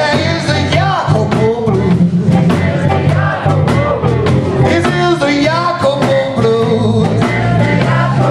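Live blues band playing loudly: electric guitar, bass guitar and drums over a steady beat, with a lead melody line bending up and down in pitch.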